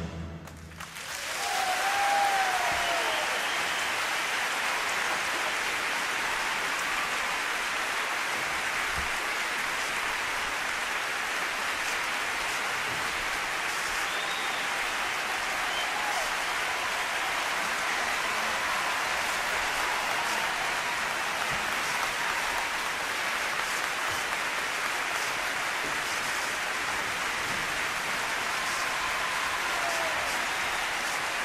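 A large concert audience applauding. The clapping swells about a second in, right after the music's last chord dies away, and then holds steady.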